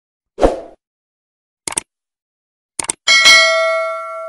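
Subscribe-button animation sound effects: a short thump, then two quick double mouse clicks about a second apart, then a bright bell ding near the end that rings on and slowly fades.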